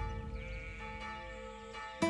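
A church bell ringing on after a single stroke, its tone slowly fading away.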